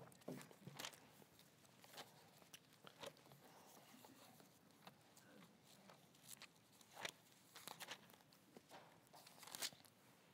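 Near silence, broken by faint scattered rustles and small clicks of Bible pages being turned on a pulpit.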